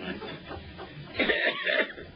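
Laughter and a cough from panel members right after a joke, in short vocal bursts, the loudest in the second half.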